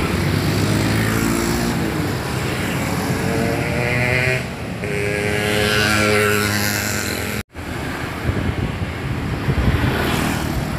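A coach bus passing with its engine running while sounding a multi-tone basuri horn in several held notes. The sound cuts out abruptly about three-quarters of the way through, and passing traffic follows.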